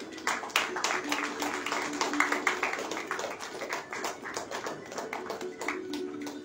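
Scattered hand clapping from a small audience, with many irregular claps and a faint murmur of voices under them.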